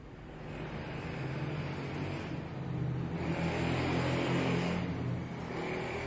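A motor vehicle's engine running, its sound swelling over the first few seconds and easing slightly near the end.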